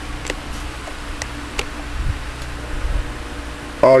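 Steady low electrical hum with faint hiss, broken by a few short sharp clicks. A man's voice begins just at the end.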